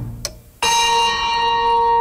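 A bell-like chime that starts sharply about half a second in and holds as a steady ringing tone. It is a broadcast sound effect between items of a radio news bulletin.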